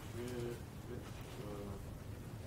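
Faint, distant male voice of an audience member asking a question away from the microphone, words unclear, over a low room hum.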